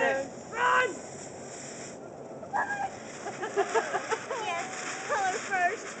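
Ground fountain firework erupting, a hissing, spraying rush of sparks. Voices chatter and exclaim in the background.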